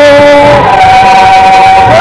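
Loud singing voice holding long notes: one note is held, then about half a second in it steps up to a higher note and holds it, with other voices beneath.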